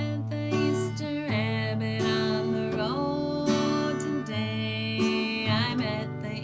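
Acoustic guitar strummed in a steady rhythm while a woman sings a children's song over it.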